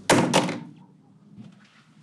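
Two dull thunks about a third of a second apart, each with a short fading tail.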